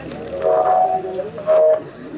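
Two loud, long held shouts from a voice. The first lasts about half a second, and a shorter, louder one comes near the end.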